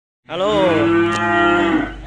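A cow mooing: one loud, long call of about a second and a half, dipping in pitch at first and then held steady.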